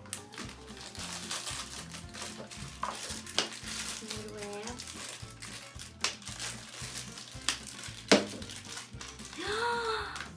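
Plastic wrappers of a LOL Surprise ball crinkling and tearing, with plastic shell pieces clicking as the ball is opened. A sharp click comes about eight seconds in. Faint background music plays underneath.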